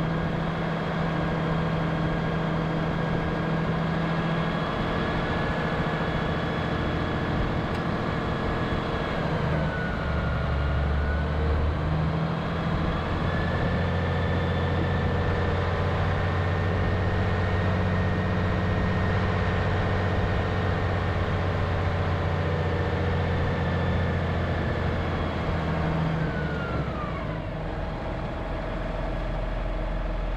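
Valtra tractor's diesel engine running steadily as it drives along, its note dipping briefly about ten seconds in and dropping away near the end as it slows.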